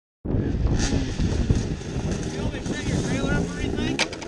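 Wind rumble and handling noise on a helmet-mounted camera microphone, with people talking in the background from about halfway in.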